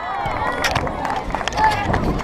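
Footsteps on a stage floor close to the microphone, then knocks and rustling as the camera is picked up near the end, with voices in the background.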